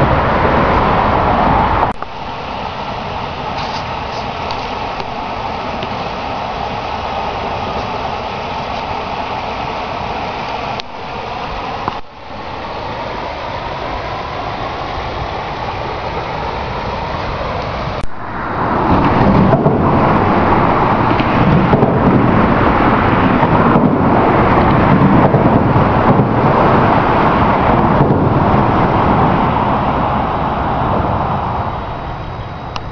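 Steady rushing noise of road traffic on the highway bridge over the river, with slowly sweeping tones as vehicles pass. It changes abruptly several times and grows louder and lower from a little past halfway.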